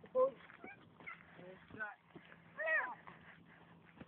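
A few short, faint utterances of people's voices, the loudest a little before three seconds in.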